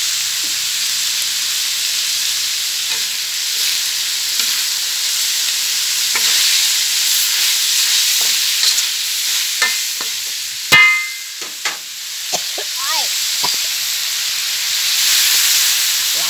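Marinated pork and dried chillies sizzling steadily in a large aluminium wok while a spatula stirs and scrapes them around the pan. Partway through, a single sharp ringing metal clank, louder than the rest, is heard.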